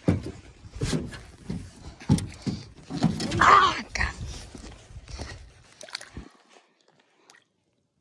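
Footsteps thumping on the deck of a metal jon boat and then rustling through dry grass as a person steps ashore, with a louder burst of rustle about three and a half seconds in; the sounds stop about six seconds in.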